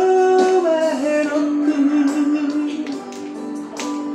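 A man singing a slow song unaccompanied, with long held notes that slide up and down in pitch.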